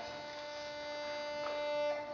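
A single steady held note, rich in overtones, sounding evenly and cutting off just before the end.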